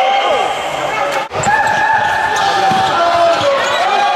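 A futsal ball bouncing and being struck on a wooden indoor court, over spectators' voices. The sound breaks off for a moment about a second in.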